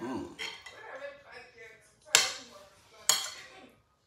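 A metal fork clinks twice against a ceramic bowl, about a second apart, sharp and ringing briefly, while someone eats from it. A short murmur of voice comes at the start.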